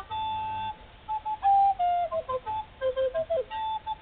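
Flute playing a melody alone: a held note, a brief pause, then quick runs of short notes that step down in pitch.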